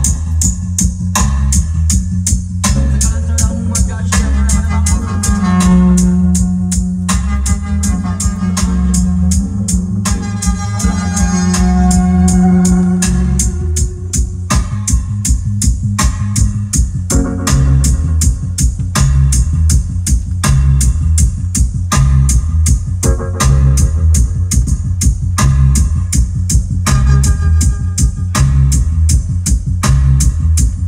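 Loud music with heavy bass and a steady beat played through a street sound system, with long held keyboard notes through the first half.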